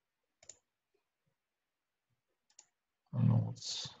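Two short, faint clicks at a computer, each a quick double click, a couple of seconds apart, with near silence between them.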